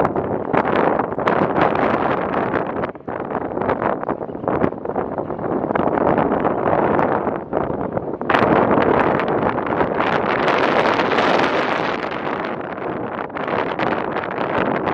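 Wind buffeting the microphone: a continuous rushing noise that gusts louder about eight seconds in.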